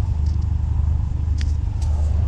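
Steady low rumble of a car engine idling, with two faint clicks about a second and a half in.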